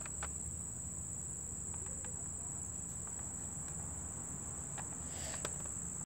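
Steady high-pitched drone of insects, likely crickets, singing without a break, with a few faint clicks of the plastic Nerf blaster being handled near the start and about five seconds in.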